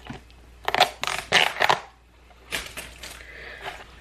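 Tape being peeled and torn off a small plastic hardware case: a scratchy, rasping stretch of about a second, then a shorter burst a moment later.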